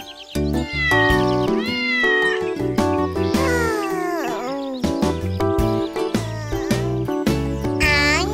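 A cartoon cat meowing several times, the calls bending up and down in pitch, over a gentle children's-song music backing.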